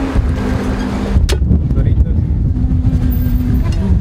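A motor vehicle running close by: a loud low rumble with a steady engine hum, and a single sharp click about a second in.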